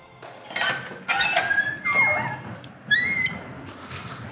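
Old wooden door creaking on its hinges as it is opened: a series of squeaks that slide up and down in pitch, ending in a thin, high, steady squeal.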